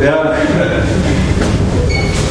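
Lecture-hall audience answering a question from the floor: a voice calls out briefly at the start, then a dense murmur of voices and laughter.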